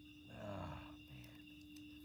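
A steady chorus of night insects, crickets or katydids, holding two continuous high tones, with a man's short breathy "oh" of disgust about half a second in.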